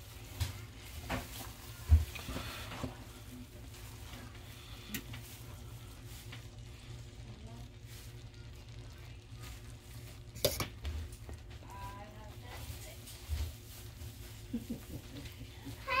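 A metal fork working through cooked rice in a stainless steel pot, with scattered sharp clicks as it strikes the pot, over a low steady hum.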